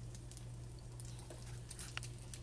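Pancake batter frying quietly in an oiled nonstick pan: faint, scattered sizzling crackles over a steady low hum, with one small sharp click near the end.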